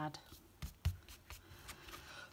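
Hands handling a card-stock greeting card on a cutting mat: a few light taps and rustles of paper over about a second and a half.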